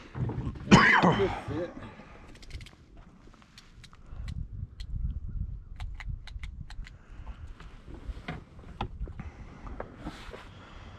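A short spoken syllable about a second in, then scattered faint sharp clicks over a low rumble.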